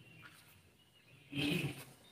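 A man's short, throaty vocal sound about one and a half seconds in, against faint room tone.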